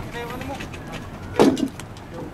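Low voices of people talking, with one short loud burst about one and a half seconds in.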